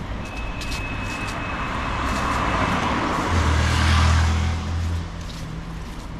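A car passing by on the street, its tyre and engine noise swelling to a peak about four seconds in, with a low engine hum as it goes past, then falling away.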